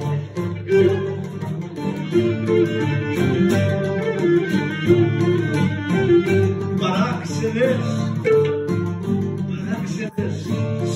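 Cretan folk music: a bowed Cretan lyra playing the melody over plucked laouto and guitar accompaniment, with no voice.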